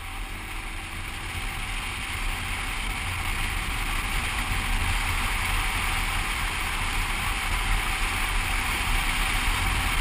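Sidecar motorcycle riding at road speed: a steady low engine rumble under a thick rush of wind noise on a helmet-mounted camera. The noise grows louder through the first half as the bike picks up speed, then holds.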